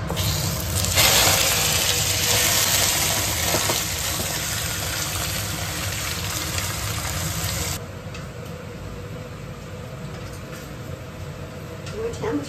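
Blanched beef cubes hitting hot caramelised sugar and oil in an iron wok, sizzling loudly as they are stir-fried with a wooden spatula. The sizzle drops off sharply about eight seconds in, leaving quieter stirring.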